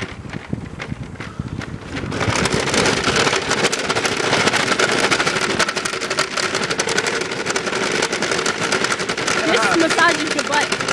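Plastic shopping cart carrying a rider, pushed over paving: its wheels and frame rattle in a rapid, continuous clatter that gets louder about two seconds in.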